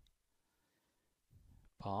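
Near silence: room tone, with a man's narrating voice starting again near the end.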